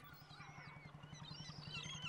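Faint gull calls, a series of wavering cries in a harbour, over a low, even throb.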